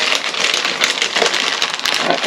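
Clear plastic packaging crinkling and crackling as a bag of hot glue sticks is handled and opened, a steady run of fine crackles.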